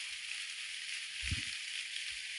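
Audio from the Calm meditation app playing through a phone's small speaker: a steady, thin hiss with no bass. A brief low sound comes about a second in.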